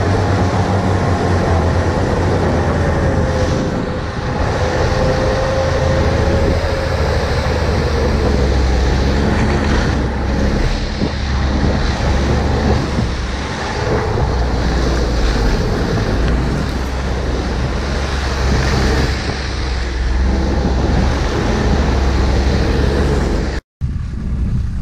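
Ski-Doo Skandic 900 ACE snowmobile running under way, a steady drone of engine and track with wind on the microphone. A tone in it falls slightly in pitch over the first few seconds. The sound cuts out abruptly for a moment just before the end.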